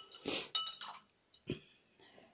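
A jar lid set down on a table with a short ringing clink, followed by a few light clicks as the open jar is handled, and a soft knock about one and a half seconds in.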